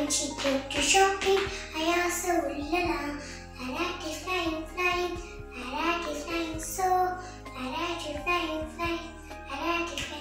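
A child's voice singing a song over a backing track of steady low notes.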